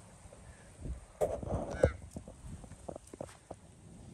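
Footsteps of a person walking through dry grass, with a short wordless voice sound about a second and a half in.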